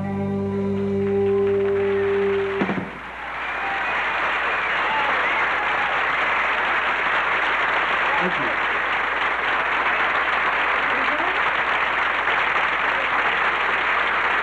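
An electric rock band's final held chord rings and cuts off sharply a little under three seconds in. Then the studio audience applauds and cheers steadily.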